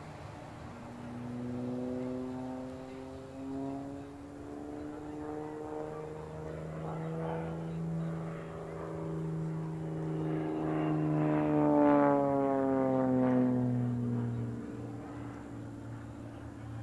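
Single-engine aerobatic propeller plane's engine and propeller in flight, the pitch sliding slowly up and down through its manoeuvres. It is loudest about twelve seconds in as the plane passes, and the pitch then falls away.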